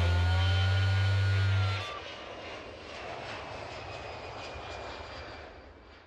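A loud, held low note that ends abruptly about two seconds in. It is followed by a quieter airplane flyover sound effect, a steady rushing that fades out at the end.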